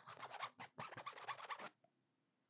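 Scratchy rubbing on hockey jersey fabric right at a small handheld microphone: a quick run of short rasps that stops near the end.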